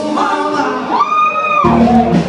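Live band playing with a male singer. The bass and drums drop out while a long high note is held, then the full band comes back in about a second and a half in.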